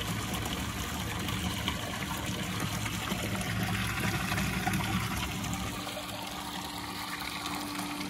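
Water pump running on a turtle tub, its return flow trickling and splashing steadily into the water. A faint steady hum comes in about five seconds in.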